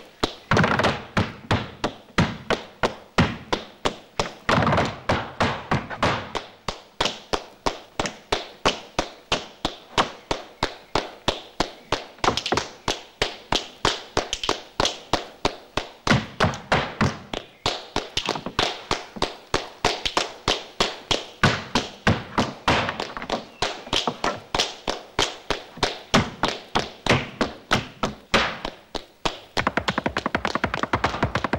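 Flamenco zapateado: a dancer's boots stamping on wooden planks in a quick, even rhythm of about three strikes a second, with some strikes louder than others.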